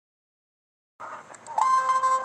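Silence for about the first second, then the animation's soundtrack cuts in, and about halfway through a loud, steady, high beep-like tone starts and holds.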